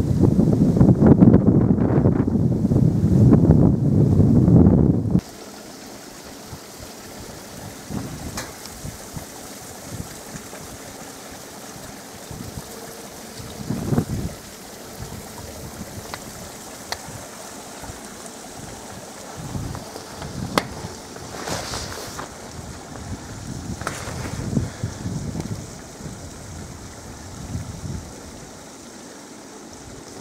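Wind buffeting the microphone for about five seconds, then stopping abruptly; after that a quieter steady outdoor hiss with a few scattered short crunches and knocks.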